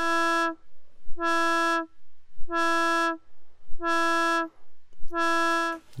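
Synthesizer drone from an Erica Synths Graphic VCO, a steady reedy tone at one pitch, pulsed on and off by the Mobula Mobular ROTLFO's slowed sine wave. Five notes of about half a second each, evenly spaced with silent gaps, each starting with a brief peak in loudness.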